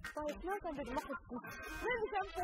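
A high-pitched, excited voice, its pitch sliding up and down in short broken phrases.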